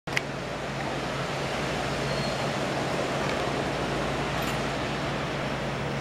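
Steady wash of ocean surf breaking along the beach, heard from a high balcony, with a low steady hum underneath. A single click sounds just at the start.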